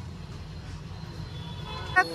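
Steady low background rumble of a busy place, with faint indistinct voices in it.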